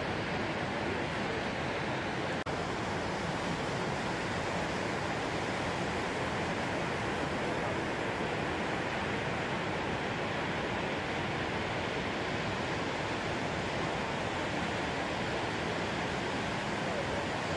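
Steady roar of ocean surf, an even wash of noise without any single wave standing out, with a momentary dropout about two and a half seconds in.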